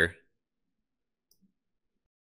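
Near silence with two faint clicks about a second and a half in, a computer mouse clicking.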